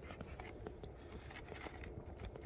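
Faint handling noise: light scrapes and small ticks as hands work the battery lead against the airplane's fuselage, over a low hum.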